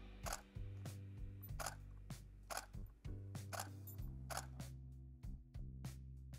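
Canon 5D Mark IV shutter firing single frames, a string of sharp clicks spaced unevenly, about half a second to a second apart, over background music with a steady bass line.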